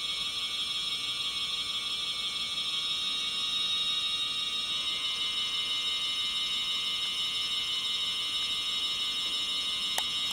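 Pipe organ holding a high, steady cluster of notes that sounds like a whistling drone. About halfway through, one of the lower notes drops out and the upper notes get louder.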